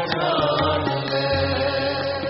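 Sikh kirtan: a man singing a devotional hymn in a gliding, chant-like line over held harmonium-style drone tones and tabla strokes.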